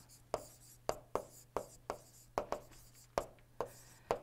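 Stylus tapping and scratching on a tablet while words are handwritten: a string of short, light ticks, about two or three a second, over a faint steady hum.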